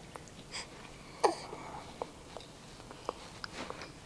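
Quiet eating sounds from a baby being spoon-fed: scattered small mouth clicks and smacks, with one short, sharp vocal burst that falls in pitch about a second in.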